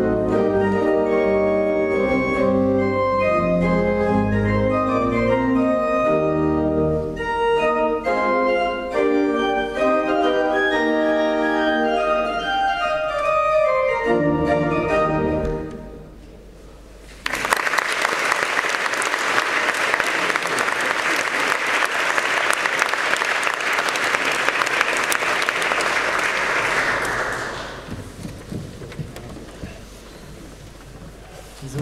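A keyboard plays sustained, organ-like chords, and the piece ends about halfway through. After a brief pause the audience applauds for about ten seconds, and the applause dies away near the end.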